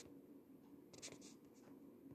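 Near silence: room tone with a low steady hum and a few faint, brief rustles about a second in.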